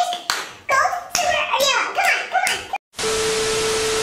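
A child clapping his hands quickly among excited children's voices. After a short dropout, about a second of TV-static hiss with one steady tone, a glitch-transition sound effect, fills the end.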